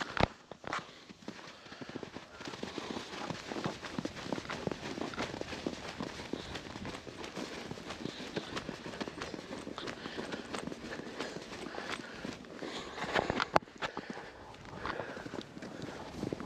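Footsteps of a person moving quickly through deep snow, a steady run of crunching steps, with one louder thump late on.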